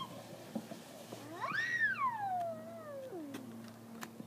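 One long, high-pitched whine from a young child, lasting about two seconds: it rises quickly and then slides steadily down in pitch.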